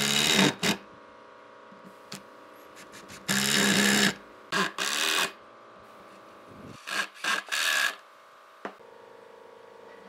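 Cordless impact driver driving wood screws into log timber, running in a series of short bursts of under a second each with pauses between.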